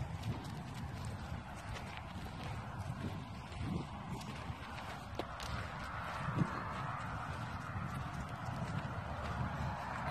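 Irregular footsteps on gravel and dirt from a person and a leashed dog walking, with soft crunches and a few light knocks.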